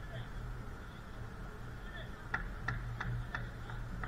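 Faint distant voices over a steady low hum, then, from just past halfway, a quick run of five or six sharp taps, about three a second.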